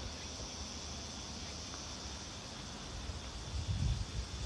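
A steady, even high drone of insects chirring in the surrounding grass, with a few low thumps of footsteps near the end.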